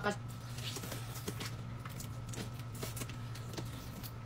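Boiled crawfish being cracked and peeled by hand: faint scattered clicks and cracks of shells, over a steady low hum.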